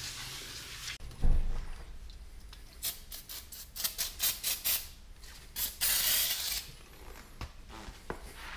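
A towel wiping a bare slotted steel brake rotor clean with brake cleaner: short rubbing strokes on the metal, with a dull thump about a second in and a longer, louder stroke about six seconds in.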